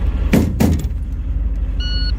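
Two hand slaps on the HMMWV's body about a quarter-second apart, over the steady low running of the Humvee's diesel engine. Near the end a shot timer gives its short, high start beep.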